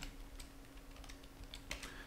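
Faint computer keyboard keystrokes: a few scattered key presses while editing text in a terminal.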